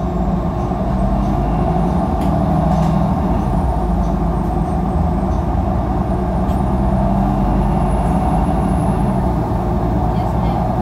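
Cabin sound of a 2016 Nova Bus LFS city bus under way: a steady engine and drivetrain drone with road rumble, and a faint high whine that drifts slightly in pitch.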